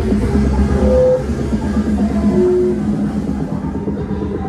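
Loud music with a steady drum beat, played through the big loudspeaker stack on a passing carnival float.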